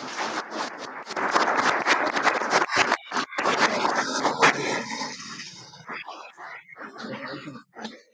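A small audience applauding. The clapping swells about a second in and then thins out to a few scattered claps near the end.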